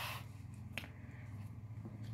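Tarot card being drawn from the deck and handled: a short swish of card sliding at the start, then one light click under a second in.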